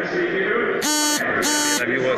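Two short, identical electronic buzzes at one steady pitch, each about a third of a second long and about half a second apart, over background voices.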